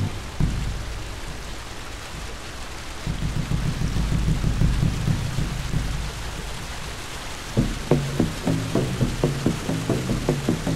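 Soundtrack of steady rain-like hiss with a low rumble, like a rain-and-thunder ambience. About three-quarters of the way in, a steady drum beat of about three strokes a second comes in over it.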